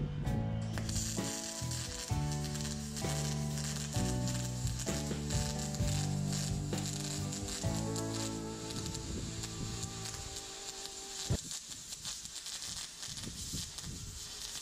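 Welding arc crackling and hissing steadily as the aluminum hull is welded. Background music plays over it at first and fades out about two-thirds of the way through, leaving the arc alone.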